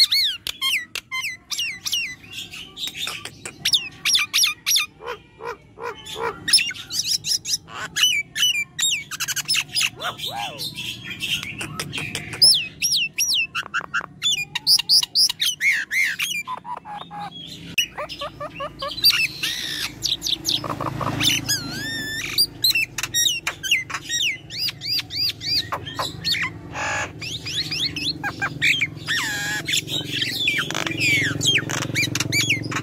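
A myna calling without pause in a rapid, varied string of gliding whistles, sharp chirps and harsh squawks, with a harsher, rasping stretch about two-thirds of the way through.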